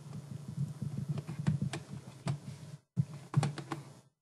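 Irregular clicks and taps at the lectern, of the kind made by typing and clicking on the presentation computer, over low, muffled knocking picked up by the microphone. The sound cuts out briefly just before three seconds in.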